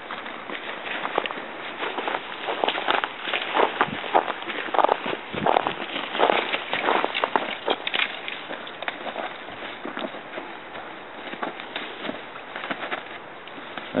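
Footsteps crunching through snow and leaf litter, with dry branches rustling, scraping and snapping as they are handled and leaned onto a branch shelter frame. Irregular crunches and snaps, loudest in the middle.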